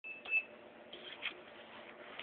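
A short, high electronic beep right at the start, followed by a few light clicks and knocks.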